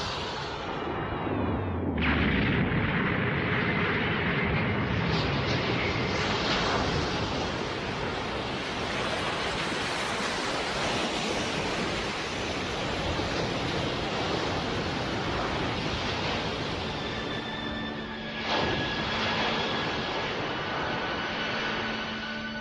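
Anime energy-blast sound effect of a Kamehameha wave: a long, steady rushing roar, with a falling sweep a couple of seconds in and a brief swell near the end.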